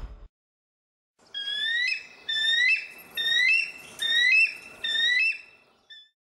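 A bird calling: a run of short, clear, rising whistled notes, about two a second, starting about a second in, over a faint hiss.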